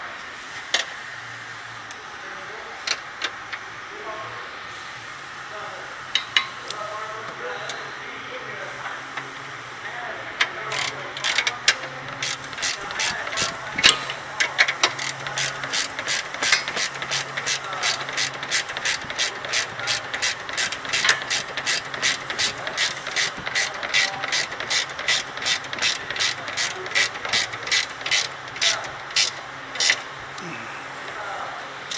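Ratcheting wrench clicking as a suspension bolt is run down and tightened. A few scattered clicks come first, then from about ten seconds in a steady run of about three clicks a second, over a low steady hum.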